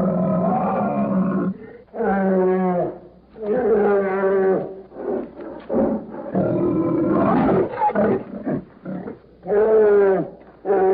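Brown bear roaring repeatedly: a run of about six drawn-out roars, each around a second long, with short gaps between them.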